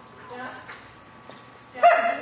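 A dog crying: faint whimpers, then a sudden loud, wavering high whine near the end.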